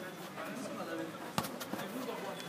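Quiet background of a small outdoor football pitch with faint distant voices, and a single sharp thud about a second and a half in: a football being struck.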